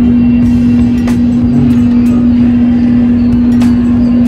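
Loud steady machine hum holding one unchanging low pitch over a rumble, with a few brief clicks over it.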